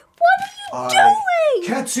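A person's voice making a drawn-out, wavering vocal sound whose pitch falls away, running straight into speech near the end.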